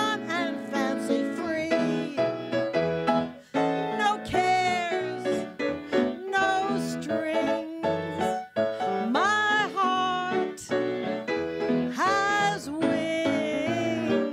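A woman singing a cabaret standard into a microphone with live piano accompaniment, holding several long notes with a wide vibrato.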